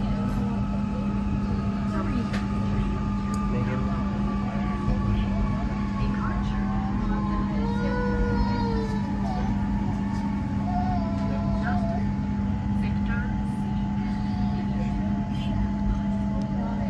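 Inside a passenger train slowing into a station: a steady low hum and rumble from the train, with a faint motor whine that falls slowly in pitch as it slows. Voices can be heard faintly over it.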